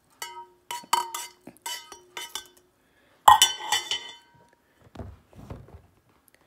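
A spoon stirring tea in a tumbler, clinking against its inside wall about seven times in quick succession, each clink ringing briefly. The loudest clink comes about three seconds in, followed by softer, dull knocks from the tumbler being handled near the end.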